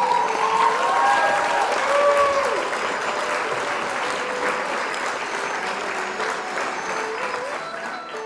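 Audience applause breaking out abruptly as the music stops, then slowly thinning out, with a few calls rising over the clapping in the first few seconds.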